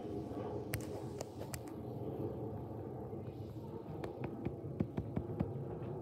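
Learjet business jet passing high overhead: a steady low rumble, with scattered faint clicks.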